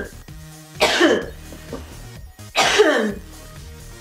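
A woman coughing twice, about two seconds apart, each cough trailing off into a falling voiced sound, over background music.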